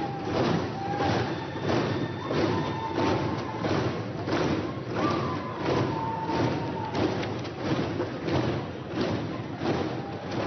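Members of parliament thumping their desks with their hands in a steady rhythm, about one and a half to two beats a second, in approval as a candidate leaves the floor; a few long held notes sound over the beat.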